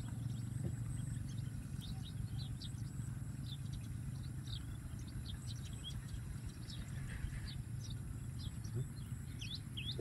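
Small birds chirping: short, high, quick chirps, one or two at a time, scattered irregularly throughout, over a steady low hum.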